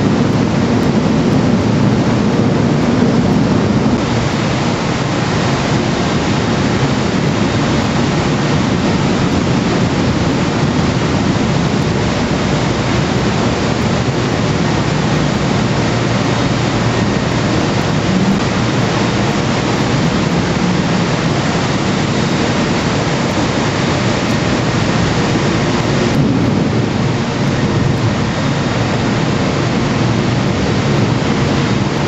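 Steady, loud machinery din inside the machinery deck of the Silver Spade, a Bucyrus-Erie 1850-B stripping shovel, with its heavy machinery running throughout.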